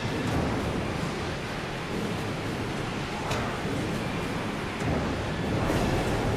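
Steady factory machinery noise from a workplace safety film, with a couple of sharp knocks, heard played back through a video call so it sounds compressed and thin.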